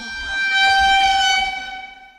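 A single held horn blast: one steady note that swells and then fades out near the end.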